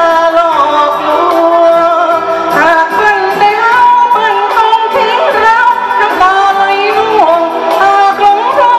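A woman singing a Thai pop song into a microphone, backed by a small live band with electric guitar and keyboard.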